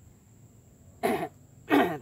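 A man coughs twice, clearing his throat: two short, harsh coughs about two-thirds of a second apart, the second a little louder.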